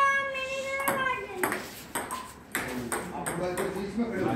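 Table tennis rally: a plastic ball clicking sharply off paddles and the table, a stroke about every half second to a second, with people's voices over it.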